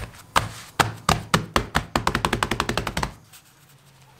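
Hands patting and pressing two flatbreads laid together on a stone countertop: a run of knocks and taps that quickens into a fast patter and stops about three seconds in.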